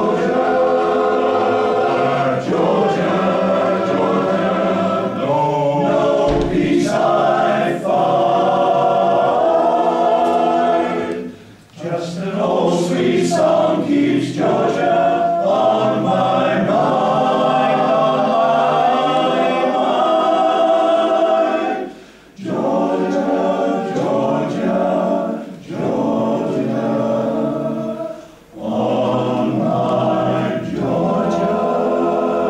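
Male voice choir singing together in sustained phrases, with three short breaks between phrases.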